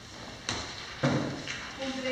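A sharp tap and then a heavier thump against a table, about half a second apart, as documents and objects are handled, with faint murmured voices toward the end.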